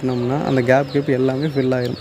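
A man's voice talking continuously: narration.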